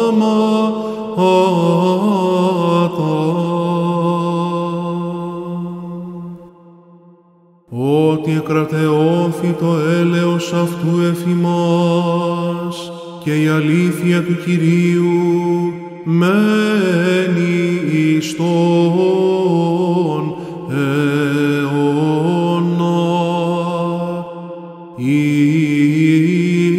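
A male chanter singing Greek Orthodox Byzantine chant in long, melismatic phrases. About six seconds in, a phrase dies away into a pause of about a second, and the chant then starts again with the next verse.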